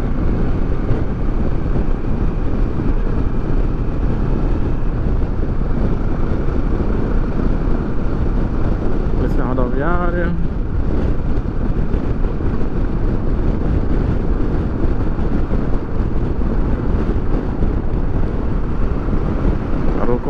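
Steady wind rush and road noise from a Kawasaki Versys 650 ridden at highway speed, with the parallel-twin engine under the wind.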